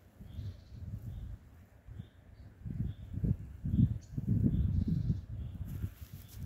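A bird calling in a regular series of short high notes, about two a second, over an irregular low rumble on the phone's microphone that grows louder in the second half.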